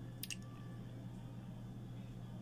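Two quick clicks of a computer mouse about a quarter second in, over a low steady hum.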